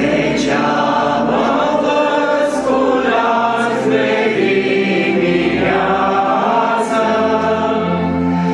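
A hymn sung in Romanian by a small group of voices, accompanied by an electronic keyboard and a piano accordion.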